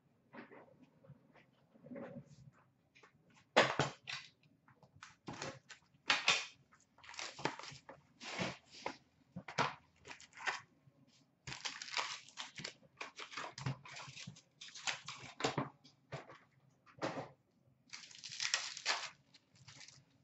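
A 2016-17 Upper Deck Ice hockey card box being opened and its packs torn open and handled: a run of short, sharp crinkling and tearing noises of cardboard and wrapper, with brief pauses between them.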